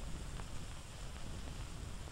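Faint steady hiss with a low hum underneath, the background noise of an old film soundtrack; no distinct sound event.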